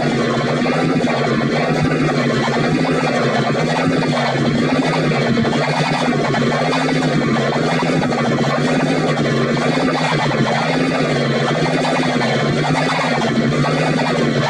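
A dense, sustained musical sound put through a vibrato audio effect: all its pitches wobble up and down together in a slow, steady rhythm, without a break.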